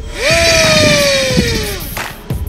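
Home-made micro brushless inrunner motor with a small propeller spinning up to a high whine, which then falls slowly in pitch over about a second and a half and dies away near the end.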